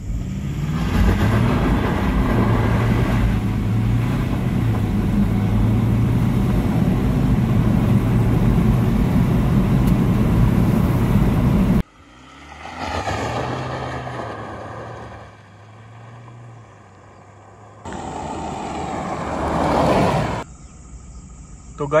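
Ford Endeavour SUV accelerating hard from a standstill, heard inside the cabin: a loud, steady engine drone mixed with road and wind noise for about twelve seconds, which then cuts off abruptly. After that, an engine sound swells and fades twice.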